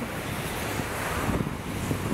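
Wind buffeting the microphone: a steady, deep rushing noise.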